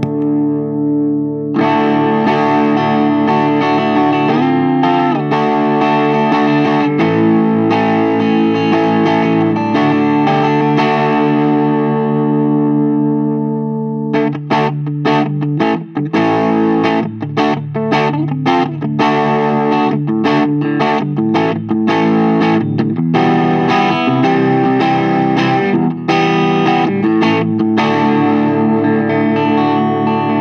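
Electric guitar (PureSalem Tom Cat) played through the Diamond Pedals DRV-1 Drive overdrive pedal, engaged, into a Mesa/Boogie Mark V:25 amp and Marshall 1965A 4x10 cabinet: distorted chords ringing out for about the first half, then a choppy staccato chord riff from about halfway on.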